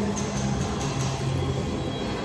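Shopping-mall background: a steady low hum over general indoor din.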